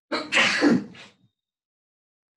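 A person sneezing once: a loud burst of breath with a falling voiced note, then a softer puff just after a second in.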